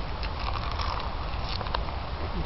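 Raw lettuce leaves being chewed: a few crisp crunches scattered over a low steady rumble.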